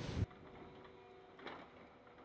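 Near silence after the sound cuts off a quarter second in: a faint steady hum and one soft click about one and a half seconds in.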